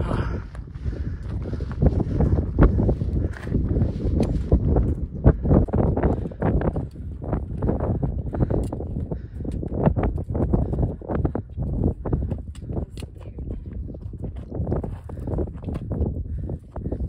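Footsteps on loose rock and scree, irregular steps of a climbing hiker, over a steady low rumble of wind on the microphone.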